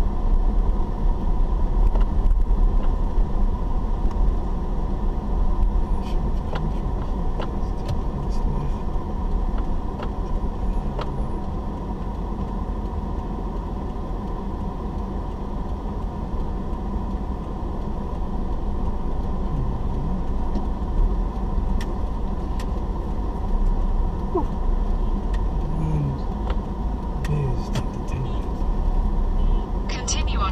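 A car driving slowly, heard from inside the cabin: a steady low engine and road rumble, with scattered small clicks and rattles.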